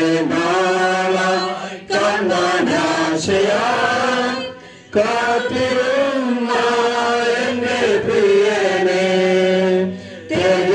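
Voices chanting a slow hymn with long held notes and gliding pitch, breaking off briefly about two seconds in and pausing for half a second near the middle before going on.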